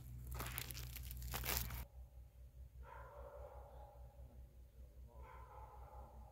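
Crinkling and crunching of dry leaves and grass as a phone is handled and set down on the ground, ending about two seconds in. After that only a low background with two faint, brief pitched sounds in the distance.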